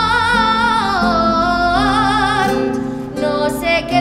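A young woman singing an Aragonese jota in long, ornamented held notes with wide vibrato, accompanied by a Spanish acoustic guitar. Her voice breaks off briefly near the end while the guitar carries on.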